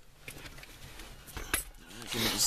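Quiet handling noise: a few faint light clicks and rustles of small objects being moved, the clearest about one and a half seconds in.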